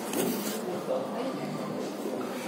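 Faint, indistinct speech, quieter than the lecturer's usual amplified voice.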